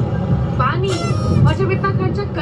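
A voice speaking over a steady low outdoor background rumble.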